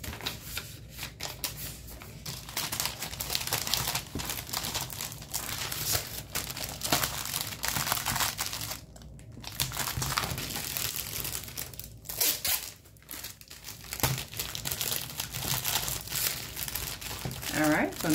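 Clear plastic cellophane sleeve crinkling as it is handled, in stretches broken by short pauses.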